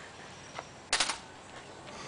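A small metal car-radio unit hitting concrete paving stones, one sharp clatter about a second in.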